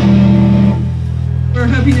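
A live rock band's electric guitar and bass guitar holding a low chord and letting it ring out through the PA, the higher, busier sound dying away about three-quarters of a second in. A man starts talking into the microphone near the end.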